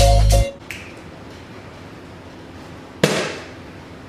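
Music with a heavy bass beat cuts off about half a second in. About three seconds in, a plastic water bottle lands on the rug with a single sharp thud.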